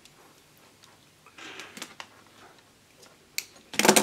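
Faint clicks and a short scraping rustle of stranded household electrical wire being stripped and handled.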